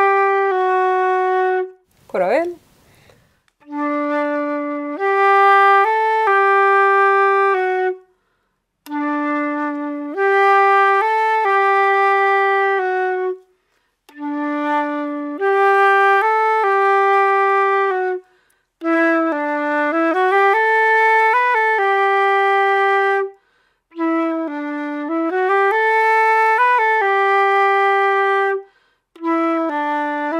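Silver concert flute playing the same short waltz phrase again and again in its low register, with brief pauses between repeats: the first phrase of the tune's A part being taught by ear. A short sliding sound comes just after the first phrase.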